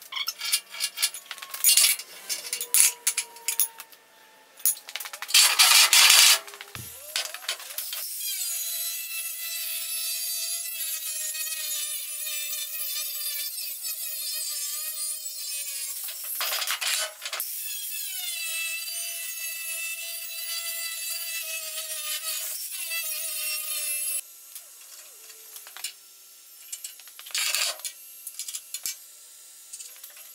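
Angle grinder with a thin cutting disc cutting through an aluminium checker-plate ramp: a steady whine that sags slightly under load, in two runs of about eight and six seconds with a short break between. Before it come several clanks of the metal ramps being handled and set up.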